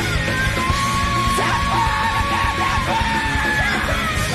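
Three-piece rock band of guitar, bass and drums playing loud and dense, live. A high voice holds a long note, then wavers up and down through the second half.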